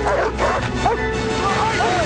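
A team of sled dogs yipping and barking in quick, short, excited cries, over background music with a long held note.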